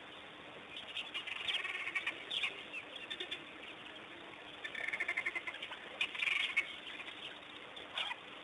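High-pitched chirping and twittering animal calls in short bursts. They include a fast trill of repeated notes about five seconds in and a louder flurry of chirps just after six seconds.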